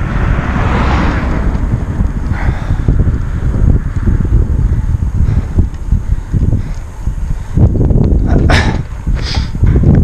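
Wind buffeting the microphone of a camera mounted on a moving road bicycle: a loud, uneven low rumble, with two short, sharper sounds near the end.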